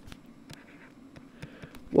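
Faint scratching with a few light clicks of a stylus writing on a tablet or pen display.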